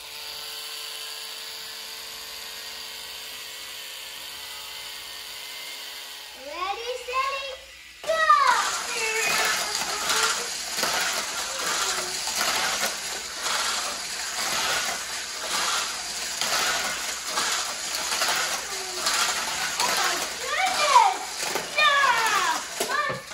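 A push-to-charge toy race car's motor whining steadily. About eight seconds in, the cars start running around a plastic figure-8 track with a louder rattling whir, and a child's voice calls out over it.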